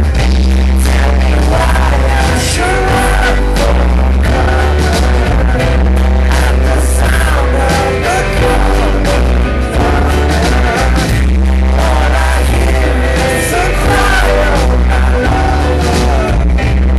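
Rock band playing loud live through a club PA, with heavy bass, steady drum hits and a man singing.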